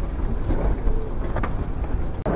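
Steady low rumble and hiss of an aircraft jet bridge, with a few light knocks.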